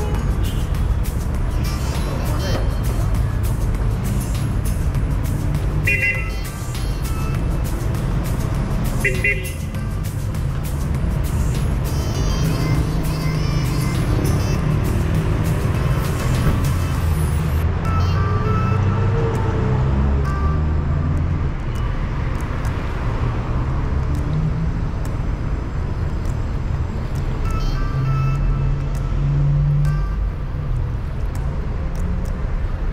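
City street sound: car traffic going by, with music and people's voices mixed in. Two short high-pitched sounds come about six and nine seconds in.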